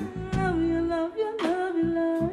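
A live funk band playing: a voice sings long held, sliding notes over electric guitar, bass guitar and drums, with two sharp drum hits about a second apart.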